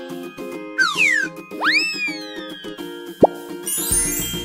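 Cheerful children's background music with cartoon sound effects on top: a falling whistle about a second in, then a rising-and-falling swoop, a short plop just after three seconds, and a sparkly swish near the end.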